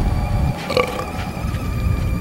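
Golf cart riding over grass: a steady low rumble of wheels and wind on the microphone, with a short throaty vocal sound about three-quarters of a second in.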